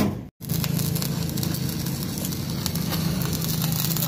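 Electric arc welding on a truck trailer's steel side rail: steady crackling and sizzling of the arc with a low hum underneath, starting about half a second in. A single sharp metal knock comes right at the start.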